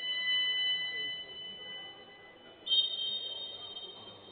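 Two high-pitched signal tones. The first starts suddenly and fades over about two and a half seconds. The second, a little higher, starts just under three seconds in.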